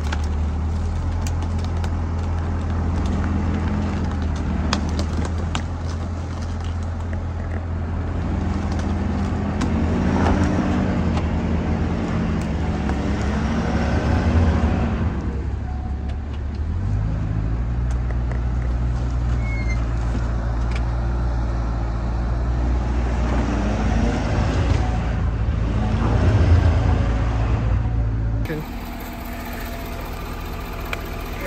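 A pickup truck's engine running under load as it pulls with a kinetic recovery rope on a skid steer stuck in pond mud; the engine note steps up about halfway through, with a few louder surges, and the sound drops away shortly before the end.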